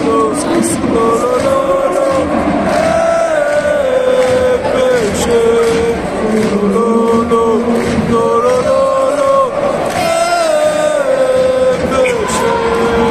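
A stadium crowd of Paris Saint-Germain ultras in the Auteuil stand singing a chant in unison: a slow melody of long held notes that step up and down over steady crowd noise.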